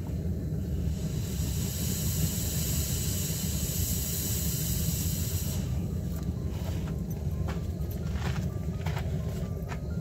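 A hot rebar tang burning into a crepe myrtle wood handle: a hiss starts about a second in and cuts off suddenly about four and a half seconds later, over a steady low rumble, with a few faint clicks afterwards.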